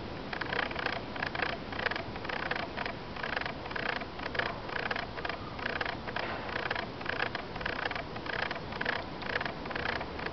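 Rhythmic rasping animal calls outdoors, repeating about twice a second.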